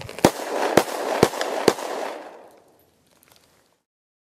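Four sharp bangs about half a second apart over a crackling noise that fades away about two and a half seconds in.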